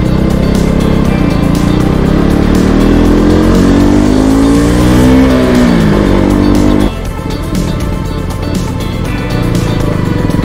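KTM RC 200's single-cylinder engine heard from the rider's seat under way, its pitch rising steadily as it accelerates for several seconds, then falling as it slows, with the level dropping suddenly about seven seconds in.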